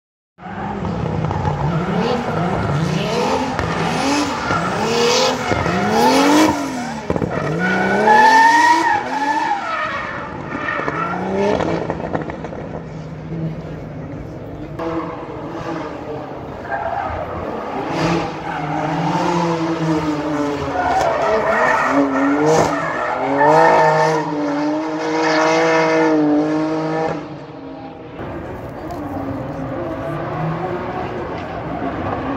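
Drift car engines revving hard, their pitch rising and falling again and again, with tyres squealing as the cars slide through the course. It is loudest in the first ten seconds, then holds at steadier high revs before easing off near the end.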